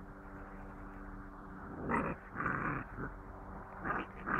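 Seven-week-old puppies growling in several short bursts as they tug at a jute bite pillow, starting about two seconds in.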